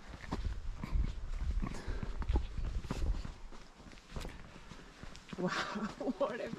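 Footsteps on a paved trail, a steady walking pace of soft footfalls, with a low rumble on the microphone through roughly the first half.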